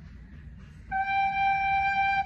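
Soprano recorder sounding a single held G, starting about a second in and holding steady at one pitch.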